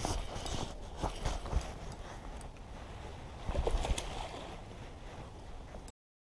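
Handling noise from a spinning rod and reel held close to the microphone: irregular knocks and clicks over a low rumble of wind, cutting off suddenly near the end.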